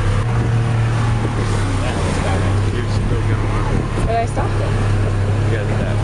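A boat's engine running steadily, heard from on board as a low, even hum, with faint voices over it.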